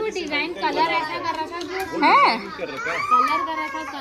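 High-pitched voices of children and women talking and calling out over each other, with one loud high call rising and falling about two seconds in.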